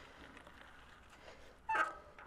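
A dog barks once, short and loud, near the end, over low steady background noise.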